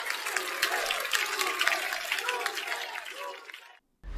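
Studio audience applauding, with cheering voices in the crowd, fading out about three and a half seconds in.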